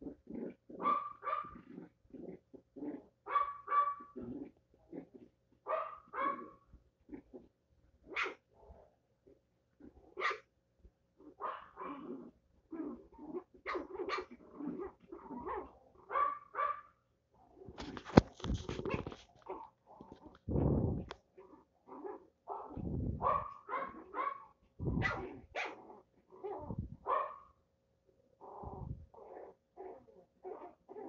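Two small dogs playing together, giving short barks and growls in quick uneven bursts throughout, with one sharp knock about eighteen seconds in.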